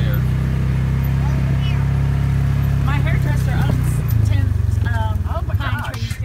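A vehicle's engine running steadily at low speed. Its pitch drops about four seconds in as the vehicle slows, and it fades out near the end as the vehicle comes to a stop.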